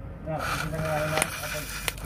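Diesel truck engine running at idle, a steady low rumble under the hood, with a broad hiss coming in about half a second in and two sharp clicks near the end.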